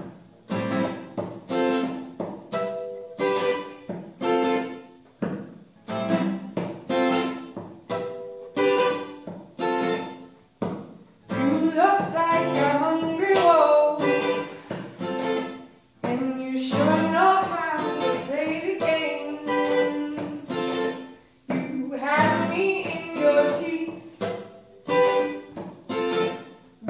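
Acoustic guitar strummed in a steady rhythm, with a woman starting to sing over it about eleven seconds in.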